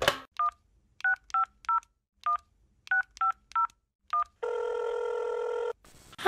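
A telephone touch-tone keypad dialing a number: a click, then nine short dual-tone beeps at an uneven pace. Then one steady ringing tone, about a second and a half long, that cuts off just before the call is answered.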